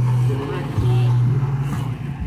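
A car engine running close by, a steady low hum with a brief break about a second in, with faint voices over it.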